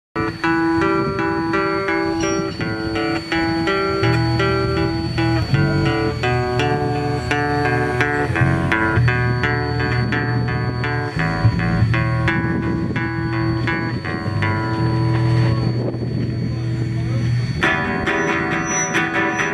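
Live band instrumental intro: an acoustic guitar picks a repeating melody, and an electric bass guitar joins about four seconds in.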